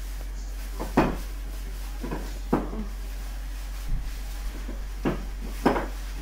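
Soft knocks and thumps, about six, from hands striking together and against the body while signing, the loudest about a second in and near the end, over a steady low electrical hum.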